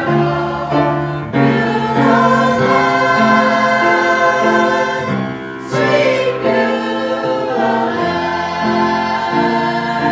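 Church choir singing together, holding long notes that change every second or so, with a brief pause and breath a little past the middle.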